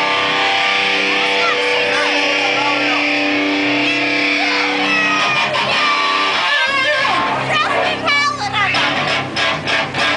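Amplified electric guitar holding a chord that rings out for about six and a half seconds and then stops, followed by loud crowd voices and shouts in the club.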